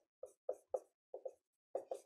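Dry-erase marker writing on a whiteboard: a run of short, quick strokes, about seven in two seconds, as words are written out.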